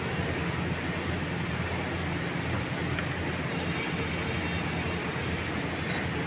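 A steady, low mechanical hum with a constant background drone, and one faint tick about three seconds in.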